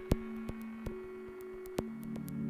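A sparse passage of glitchy electronic music: a steady sine-like drone held on two pitches, cut by four sharp, irregular clicks, the loudest about a tenth of a second in.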